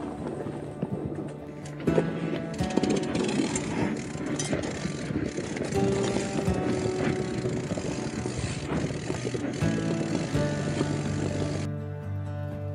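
Background music over the rattle and crunch of a mountain bike rolling down a rocky dirt trail, the tyres grinding over stones and the bike jolting with many small knocks. The riding noise stops near the end, leaving only the music.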